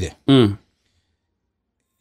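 A man's voice says one last short word in the first half-second, then it cuts off into dead silence.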